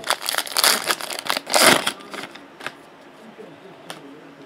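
Foil wrapper of a Panini Contenders Draft Picks trading-card pack crinkling loudly as it is handled and opened by hand for about two seconds, followed by a few faint crackles.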